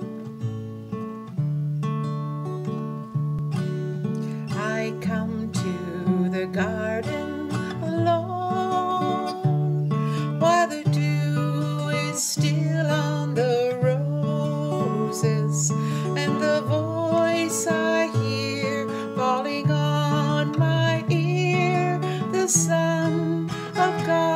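Acoustic guitar playing a slow hymn accompaniment in held chords. A woman's voice sings the melody over it from about four seconds in.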